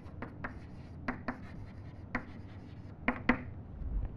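Chalk writing on a chalkboard: about seven short, sharp chalk strokes and taps at an irregular pace, the loudest two close together about three seconds in.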